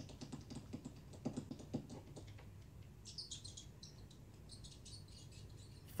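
Faint clicking for the first couple of seconds, then faint, quick high chirps, bird-like, from cat-TV footage playing quietly.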